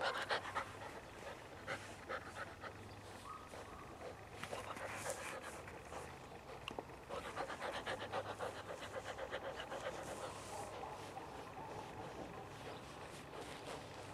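Moscow Watchdog puppy panting close to the microphone, a quick, even run of breaths that is densest and loudest about halfway through.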